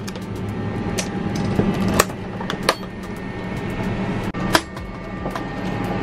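Metal airline galley cart latch and door being unlatched and opened, giving several sharp clicks and knocks, the loudest about two seconds in and again about four and a half seconds in. A steady low cabin hum runs underneath.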